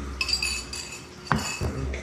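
A spoon clinking and scraping against a ceramic bowl, with short high ringing tones, and one sharp knock a little past halfway.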